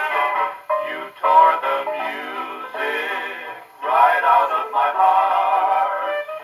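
A 78 rpm shellac record of 1940s vocal-group and orchestra music playing on an acoustic Victrola gramophone, with wordless voices and instruments carrying the melody. It has a thin, boxy sound with no deep bass.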